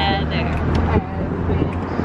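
Steady low rumble of road and engine noise inside a moving car's cabin, with a woman's voice singing and calling out over it in snatches.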